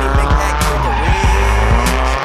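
A turbocharged Nissan Sil80 (S13) drifting sideways through a corner, its tyres squealing and its engine running, mixed under rap music with a heavy bass and beat.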